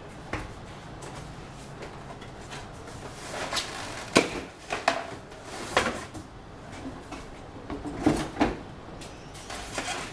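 Cardboard box being opened and handled: flaps and sides scraping and rustling, with several knocks and thumps as the box is lifted, turned over and the heater unit set down. The sharpest knock comes about four seconds in, and two come close together about eight seconds in.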